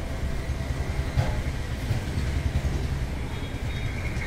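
Outdoor market street ambience: a steady low rumble of traffic.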